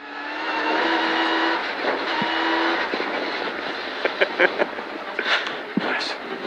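Mitsubishi Lancer Evolution X rally car's engine heard from inside the cabin, holding a steady high-revving note at about 100 km/h on snow. It then eases off as the car slows, with a few short sharp clicks or pops near the end.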